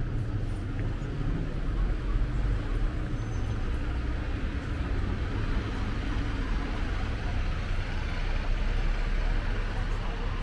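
Town-centre street traffic: a steady low rumble of vehicles, including a bus moving through the junction, with passers-by talking.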